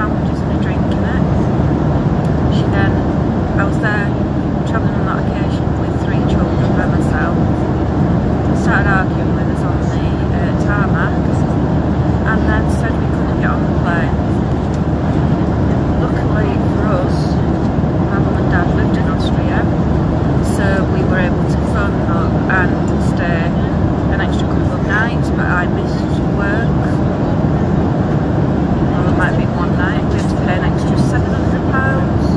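Jet airliner cabin noise: a loud, steady roar of engines and airflow with no breaks. A woman's voice is talking underneath it, largely drowned out.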